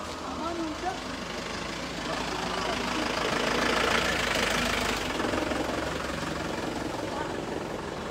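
A motor vehicle passing, its engine and road noise swelling to a peak about four seconds in and then fading, over a background of people's voices.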